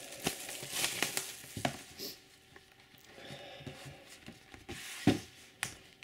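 Clear plastic wrap on an LP record jacket crinkling as it is pulled off, then softer handling of the cardboard gatefold sleeve, with a single thump about five seconds in.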